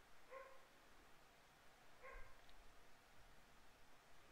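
Near silence, broken by two faint, short pitched calls about a second and a half apart.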